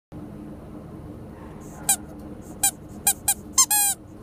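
A dog whining: five short, high-pitched squeaks in quick succession, then a longer one near the end, over a steady low hum.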